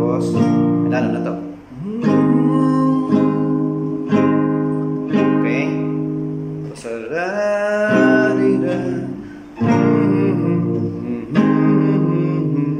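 Nylon-string classical guitar with a capo, strummed through the bridge chord progression of A minor, G and F, each chord ringing out before the next comes in roughly a second later.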